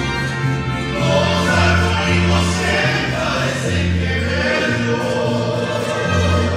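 Mariachi ensemble performing: several men's voices singing together with violins over a deep bass line that moves in long held notes.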